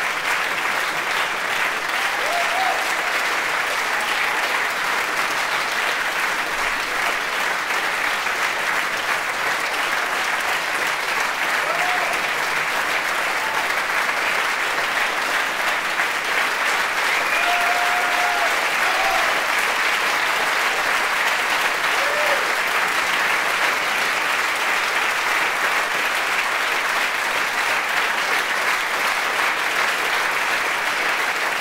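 Audience applauding steadily after a live performance, with a few short calls from the crowd scattered through.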